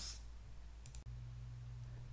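Faint room tone with a low steady hum and a couple of soft computer mouse clicks about a second in.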